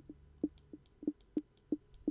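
A run of short, light clicks, about three a second, as a Kodi menu is stepped through poster by poster.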